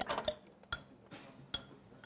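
A small spoon clinking against the wall of a cup while jam is spread inside it: a few short, separate clicks, two of them clearer, about a second apart.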